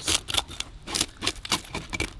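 Toothed metal fish scaler scraping scales off a whole snapper in quick repeated strokes, about four or five a second.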